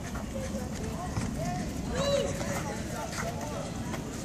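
Indistinct chatter and calls from spectators and players, with one louder drawn-out shout about two seconds in, over a steady background rumble.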